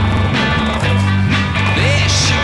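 Music soundtrack with a steady drum beat over a sustained bass line.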